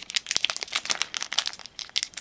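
The foil wrapper of a Magic: The Gathering booster pack being torn open by hand, crinkling in quick irregular crackles.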